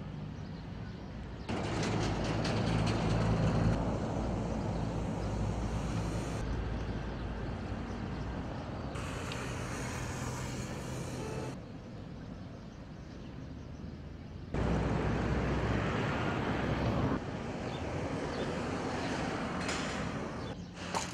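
Outdoor street ambience with vehicle traffic noise. Its level and character jump abruptly several times as the shots change.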